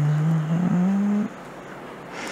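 A person humming a closed-mouth "mm-hmm", one steady note that steps up in pitch partway through and stops after about a second and a half.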